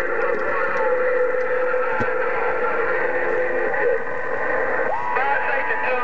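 Receiver audio from a President HR2510 radio tuned to 27.085 MHz: a steady, thin-sounding hiss of static with faint, garbled voices of distant stations. About five seconds in, a steady whistle of a heterodyning carrier comes in, with warbling voice around it.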